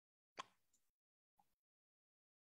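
Near silence, broken by one brief faint click about half a second in and a fainter one about a second later.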